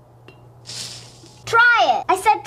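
Salt poured from a canister into a glass jar: a short hiss lasting under a second, starting about half a second in. A voice comes in near the end.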